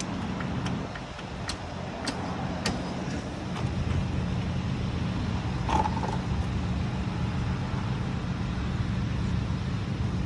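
A vehicle engine idling steadily, a low hum that gets somewhat louder a few seconds in. Over it come a handful of sharp clicks and knocks in the first few seconds as a floor jack under a van is worked.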